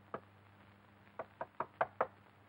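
Rapid knocking on a door, about five knocks a second, in two short runs: a couple of knocks right at the start, then a run of four or five near the end.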